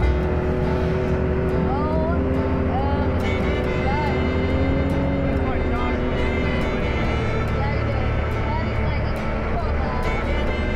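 Can-Am Maverick X3 side-by-side cruising on a paved road: its turbocharged three-cylinder engine runs as a steady drone whose pitch wanders slowly, mixed with wind and tyre noise. Faint music sits underneath.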